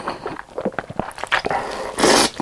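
Close-miked mouth sounds of a person slurping a mouthful of sauced noodles: a string of short wet clicks and smacks, then a longer slurp near the end.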